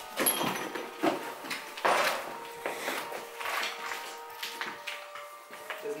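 A series of irregular knocks and scrapes, about one a second, over a faint steady tone.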